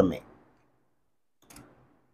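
A man's spoken word trails off, then quiet, with one faint short click about one and a half seconds in.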